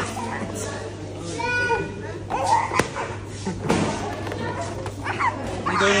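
Busy party room: overlapping children's voices and adult chatter with background music, including a brief high cry about a second and a half in and a sharp click near the middle.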